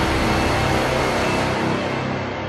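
Logo-sting music for a TV channel ident: a dense rushing wash over a deep rumble, slowly fading and growing duller.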